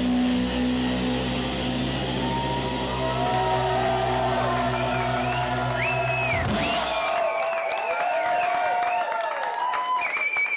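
A rock band's final chord ringing out on electric guitar, bass and cymbals, with the crowd starting to cheer and whoop over it a few seconds in. The chord cuts off about seven seconds in, leaving cheering and clapping.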